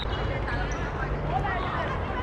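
Open-air ambience of a youth football match: faint, distant calls and voices of players over a low, steady rumble.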